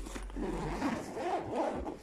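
A fabric backpack's zipper being drawn along, with the bag's cloth rustling under the hand, for about a second and a half.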